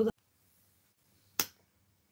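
A single sharp click about a second and a half in, short and quickly fading, against quiet room tone.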